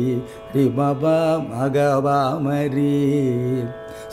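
A man singing a Carnatic phrase in raga Surutti, long held notes ornamented with wavering gamakas, over a steady drone. The singing starts about half a second in after a short pause and stops just before the end.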